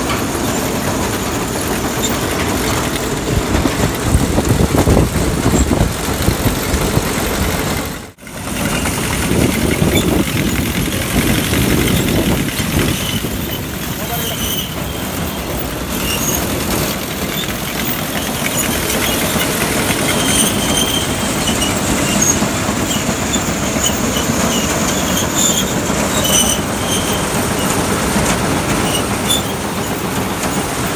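Tractor-driven straw reaper with its loading conveyor running, giving a steady mechanical clatter. The sound breaks off briefly about eight seconds in.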